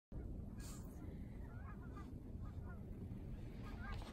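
Short honking calls come in three groups, about a second apart, in the second half, over a steady low rumble.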